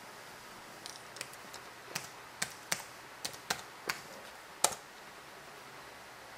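Keys tapped on an MSI GT780 laptop keyboard to enter a login password: about a dozen irregular clicks over roughly four seconds, the last one, a little before five seconds in, the loudest.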